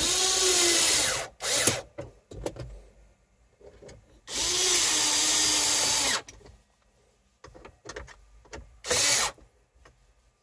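Cordless drill/driver running in bursts as it drives the screws that hold a center-console trim panel. There is a run of about a second at the start, a short blip, a longer run of about two seconds in the middle whose pitch drops and steadies as the screw seats, and a brief burst near the end.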